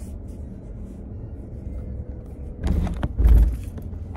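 Steady low rumble of a car cabin with the engine running, then about two-thirds of the way in a few loud knocks and rubbing as the camera is handled and adjusted in its mount.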